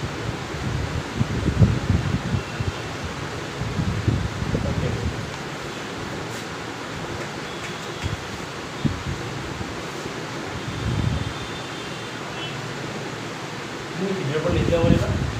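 Steady room hiss, like a fan running, with a few low muffled bumps and faint murmurs scattered through it.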